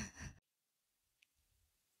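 A woman's voice trailing off in the first half-second, then near silence.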